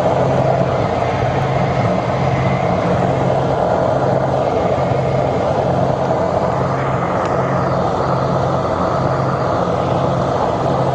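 Aircraft cabin noise in flight: a loud, steady drone of engines and rushing air heard inside a small plane, with a low hum underneath.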